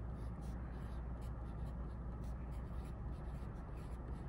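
Pencil writing on paper: many short scratching strokes as the words "My friends" are written out, over a steady low hum.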